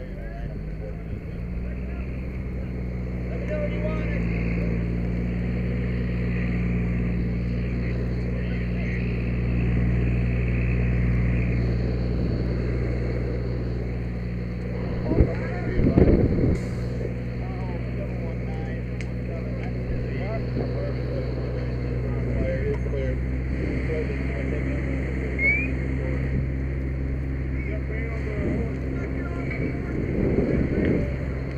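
Fire engine's diesel engine running steadily, a low even drone, with a couple of sharp knocks about halfway through.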